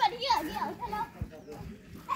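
Young children's high-pitched voices chattering and calling out, loudest in the first half second and fainter after.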